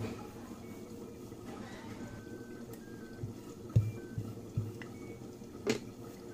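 Wooden rolling pin rolling out stuffed dough on a marble rolling board, quiet, with a few soft low knocks in the second half and a sharper click near the end.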